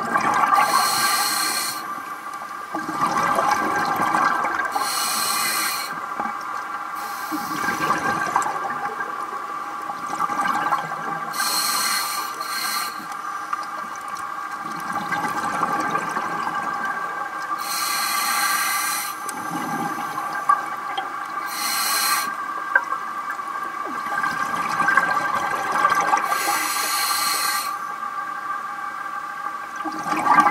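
Scuba diver breathing through a regulator underwater: a burst of hissing at each breath every few seconds, with bubbling and water movement, over a steady hum.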